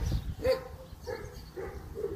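A dog giving short, repeated barks, about two or three a second, over a low rumble.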